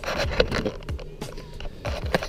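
Irregular knocks and scrapes of a handheld action camera being picked up and moved around.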